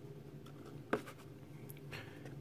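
Faint handling of small old cardboard toy boxes, with one light sharp tap about a second in as a box is set down on a table, and a couple of fainter ticks near the end.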